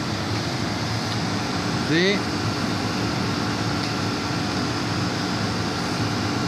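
Commercial cold room condensing unit running steadily: the 7 HP R22 compressor and its condenser fan give a steady hum with a fan rush. It is running on a full refrigerant charge, near the end of its cooling cycle as the room approaches its 0 °C cutoff. A brief voice sound about two seconds in.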